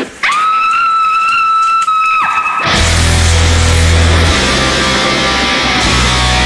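A single high note held steady for about two seconds, then a heavy metal band crashes in about halfway through with loud distorted electric guitar and heavy bass.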